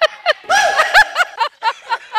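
Laughter in short, repeated high-pitched bursts.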